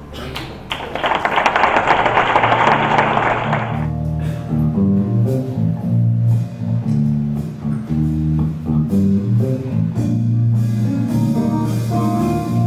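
Audience applause for about the first three and a half seconds, then a jazz band starts a piece: an electric bass and an electric guitar playing a rhythmic line of plucked notes.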